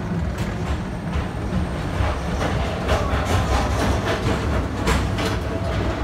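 Walt Disney World PeopleMover train rolling along its elevated track: a steady low rumble with irregular clacks from the wheels.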